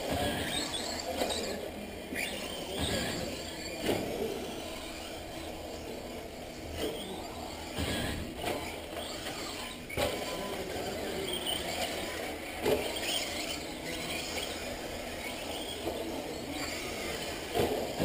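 Radio-controlled off-road race cars running on a clay track: high-pitched motor whines that rise and fall as they pass, over tyre noise, with several short knocks.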